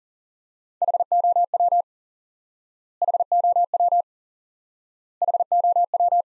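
Morse code tone keyed at 40 words per minute: one short word sent three times as rapid on-off beeps at a single steady pitch, each sending about a second long with about a second of silence between them.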